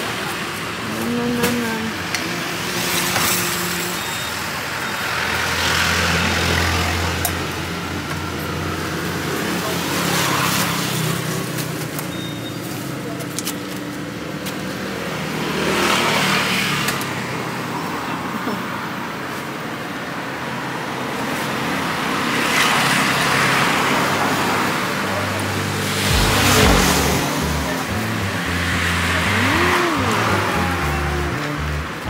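Road traffic passing close by: cars and motorbikes go by one after another, each swelling and fading over a couple of seconds, about six times.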